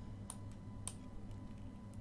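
About half a dozen faint, short clicks at a computer desk, spaced irregularly, over a steady low hum and quiet room tone.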